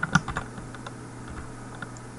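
Computer keyboard keys being typed: a quick run of keystrokes at the start, then a few scattered, lighter taps.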